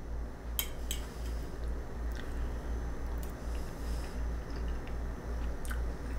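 A person chewing a mouthful of food, with a couple of light clicks about half a second in, over a steady low hum.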